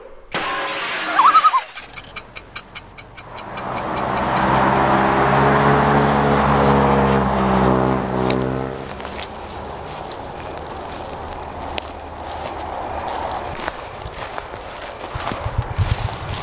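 A clock ticking about five times a second, then a large vehicle passing on a highway, its engine rising and fading over several seconds. After that, rustling and crunching of footsteps through dry grass.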